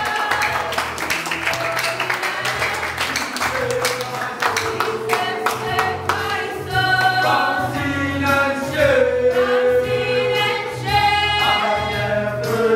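A youth choir of young men and women singing a gospel song together, accompanied by an electronic keyboard whose bass notes pulse steadily underneath.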